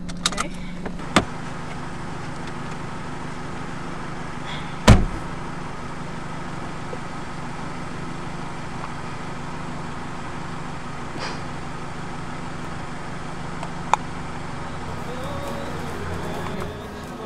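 Car engine idling steadily, heard from inside the cabin. There are a few sharp clicks in the first second and a half, and a loud thud about five seconds in as a car door slams shut; a faint click comes near the end.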